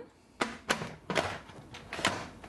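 The lid of a Cuisinart electric pressure cooker being set on the pot and twisted closed by its handle: several sharp clicks and knocks with scraping as it seats.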